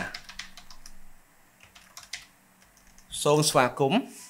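Computer keyboard being typed on: a quick run of key clicks over the first two seconds or so.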